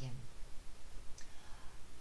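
A pause in a woman's speech. A steady low electrical hum and faint room noise fill it, with a faint click about a second in.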